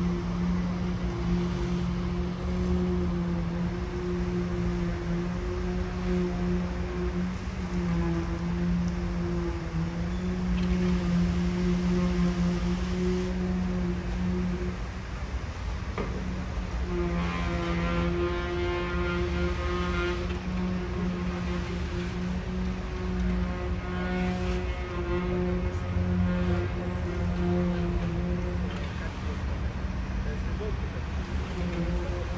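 Diesel engine of a concrete mixer truck running steadily during a foundation pour: a constant low hum that swells and sharpens twice in the second half.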